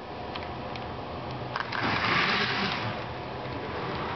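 HO-scale model diesel locomotive running along the track, its small electric motor humming steadily with wheel-on-rail rattle. The noise swells briefly about two seconds in.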